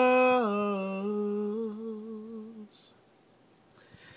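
A man's unaccompanied voice holding the last note of a sung line. The note drops a step, then holds with a slight wavering and fades away after about two and a half seconds.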